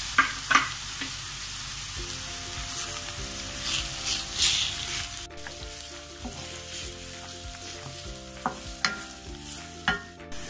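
Sliced onions and green chillies sizzling in hot oil in a metal pan while a spatula stirs them. A few sharp scrapes and taps of the spatula on the pan come near the start and near the end.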